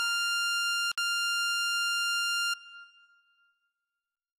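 A synth lead in FL Studio holding one high sustained note, with a brief dropout about a second in. It cuts off about two and a half seconds in as playback is stopped, leaving a short fading tail.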